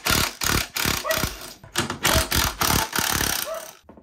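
Cordless impact driver with a socket on an extension, hammering in several bursts with short pauses as it backs out 13 mm bolts. It cuts off suddenly just before the end.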